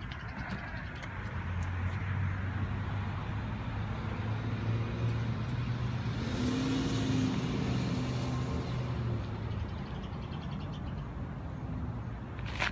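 A motor vehicle's engine hum, steady and low, swelling louder in the middle and then easing off.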